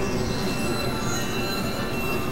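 Dense, noisy mix of several overlapping music tracks playing at once, with steady high-pitched tones running through it.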